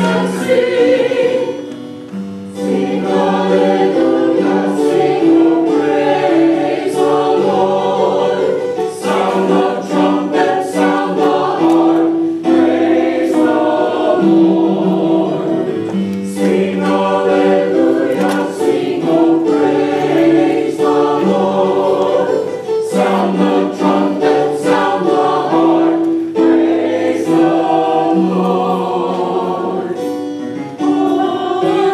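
Mixed church choir, men's and women's voices together, singing an anthem in held, sustained phrases with short breaks between them.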